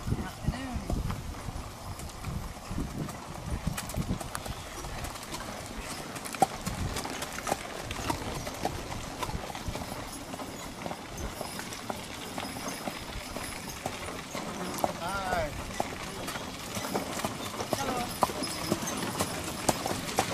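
Hooves of a train of horses and horse-drawn wagons clip-clopping on a dirt track, a steady patter of hoofbeats drawing closer.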